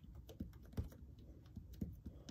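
Long fingernails clicking and tapping on a hard tabletop as fingers press a flattened piece of modeling clay: a few faint, irregular taps.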